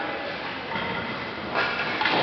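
Ice-rink noise: hockey skate blades scraping across the ice and sticks working a puck, echoing in a large arena, with a sharp knock about a second and a half in.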